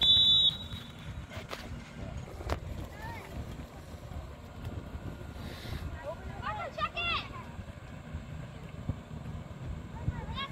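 A referee's whistle blown once in a short, high blast, followed by wind and open-field noise with distant shouts from players about six to seven seconds in.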